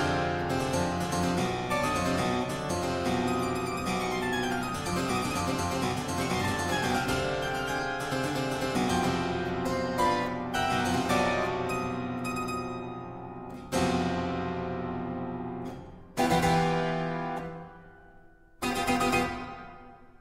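Solo harpsichord playing a modern piece built on syncopation: busy passagework, then three separate chords about two and a half seconds apart, each left to ring and fade. The last chord dies away near the end.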